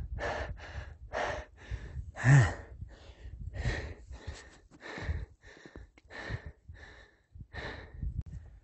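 A man panting hard through an open mouth, with quick even breaths about three every two seconds and one louder voiced gasp a little over two seconds in. He is out of breath from climbing a steep trail above 4,000 m.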